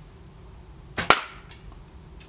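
A bow shot at a hanging plastic Coke bottle: a light snap, then a sharp loud crack about a second in as the arrow strikes, and a faint click half a second later. The bottle does not burst.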